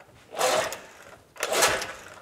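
Recoil starter of a Johnson 6 hp two-cylinder outboard being pulled twice, about a second apart, each pull a brief whirring spin as the engine turns over without firing. The spark plug boots are off and a compression gauge is fitted to the top cylinder, so each pull pumps up the compression reading.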